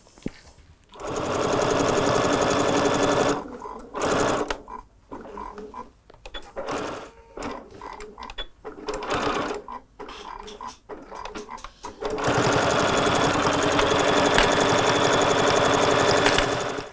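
Electric sewing machine stitching a seam through quilted fabric and fusible fleece: a steady run of stitching for about two seconds, then a stretch of short stop-start bursts, then another steady run near the end.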